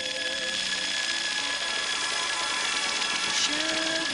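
Electronic music from a club DJ set: a high, fast-pulsing electronic tone over held high notes, with no bass or kick. A lower synth note glides up near the end.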